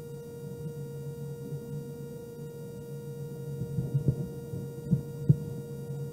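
Steady electrical hum with a held mid-pitched tone in a quiet room, and a few soft knocks about four to five seconds in.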